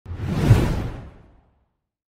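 A whoosh sound effect with a low rumble underneath, swelling to a peak about half a second in and fading away by about a second and a half.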